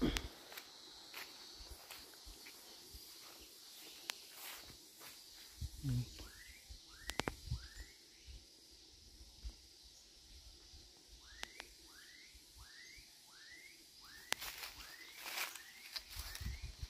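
A bird calling faintly in three runs of short rising notes, four or five notes to a run, over quiet outdoor ambience with a few scattered clicks.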